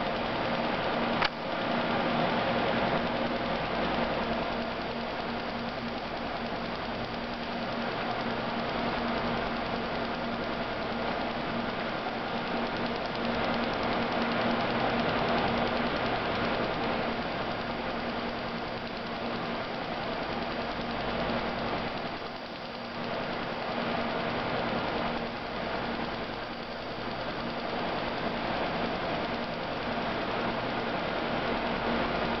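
Laser cleaning system running: a steady machine noise with a low hum, and a single click about a second in.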